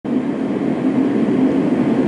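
Steady low-pitched background drone, even and unbroken.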